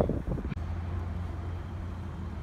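A car engine idling: a steady low hum that sets in about half a second in.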